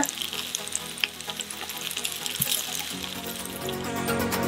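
Rainbow runner fillets and chopped garlic frying in oil in a nonstick pan: a steady, crackling sizzle. Background music comes in near the end.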